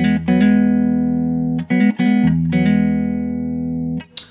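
Electric guitar playing a country double stop in E: two notes on the G and D strings, barred at the fourth fret with a hammer-on from 4 to 6 on the D string, over an open low E string. The phrase is picked twice in a clean tone, the notes ringing until they are damped near the end.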